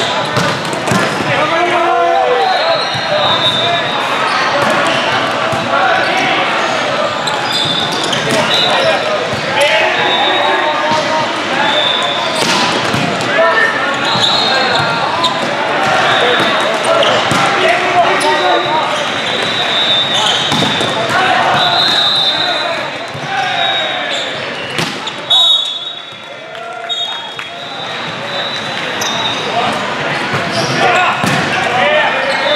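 Busy indoor volleyball hall: many voices of players and spectators calling and shouting, with sharp smacks of volleyballs being hit and bouncing, and short high squeaks of sneakers on the court floor, all echoing in a large room.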